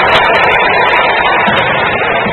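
Loud, steady noise of a basketball hall during live play, with music mixed in.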